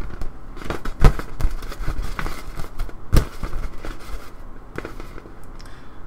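Hands slapping and rubbing an inflatable beach-ball globe to spin it: scattered taps and crinkly rubbing, with two louder knocks, one about a second in and one about three seconds in.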